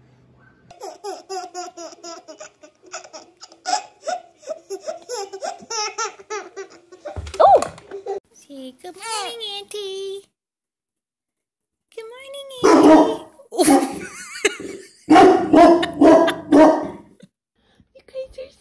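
Babies laughing: a run of quick, high, repeated giggles for several seconds, then after a short break several loud bursts of laughter.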